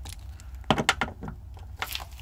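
A few sharp clicks and taps from handling against a plastic interior door panel, bunched about three-quarters of a second in with a couple of lighter ones after, over a low steady hum.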